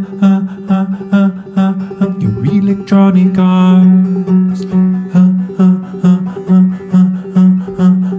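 Open-back banjo picked in a steady rhythm, a little over two notes a second, over a sustained low drone, with a man singing along.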